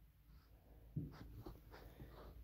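Faint scratching of a crochet hook pulling yarn through stitches, a few soft strokes starting about a second in.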